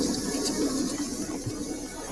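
Cartoon sound effect of a swarm of ants pouring through a portal: a steady rushing noise that slowly fades. A held low tone runs under it in the first half.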